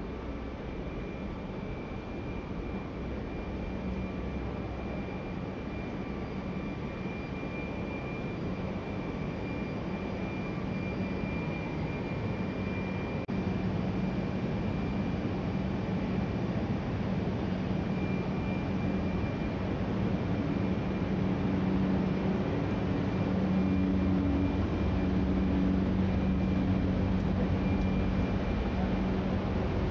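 Steady mechanical hum of building ventilation machinery, a whirring noise with a few fixed tones in it. It grows gradually louder, and a further low tone joins in during the last third.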